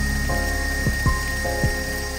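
Stand mixer running steadily, its wire whisk beating frosting as heavy cream is poured in, with a steady high tone from the motor. Background music with plucked notes plays over it.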